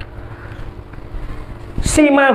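Low, steady background rumble with a faint hum during a pause in a man's speech, then a short, sharp breath drawn in by the man just before the end.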